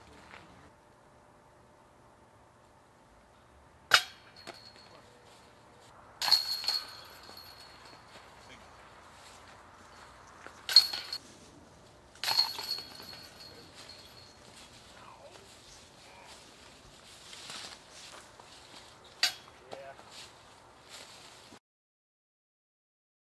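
Golf discs hitting the hanging chains of a disc golf basket. There are about five loud metallic clanks a few seconds apart, each followed by a brief jingling ring.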